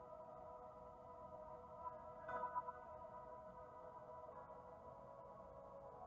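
Faint, soft ambient background music: steady held chords, with a brief faint sound about two seconds in.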